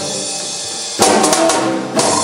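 Drum kit playing a short break in a live jazz band number: a quieter cymbal wash, then about a second in a sudden louder fill of drum and cymbal hits leading back into the band.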